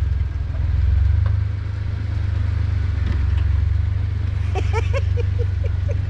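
Low, steady rumble of a Jeep Wrangler JK's engine and drivetrain as it drives slowly across a grassy trail. A quick run of short high chirps comes near the end.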